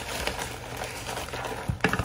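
Rustling of thin nylon drawstring bags and paper as hands rummage inside them, with a sharp click near the end.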